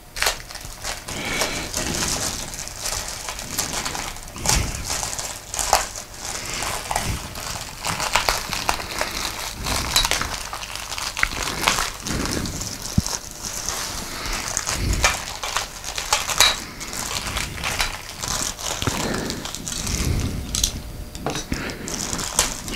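Clear plastic packing wrap crinkling and crackling as it is pulled and torn off a boom stand's tubes, with many small clicks and rustles.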